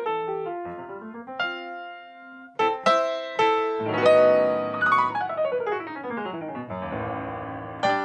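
Solo Yamaha grand piano played live. A soft passage gives way to loud chords about two and a half seconds in, then a fast run sweeps down the keyboard into low bass notes near the end.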